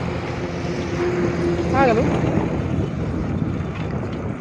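A motor vehicle's engine hums steadily, with wind rumbling on the microphone; the engine hum fades out about two and a half seconds in.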